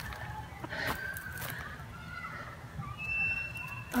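Faint, irregular footsteps on dry straw-covered ground over a low outdoor background, with a brief thin high tone a little after three seconds.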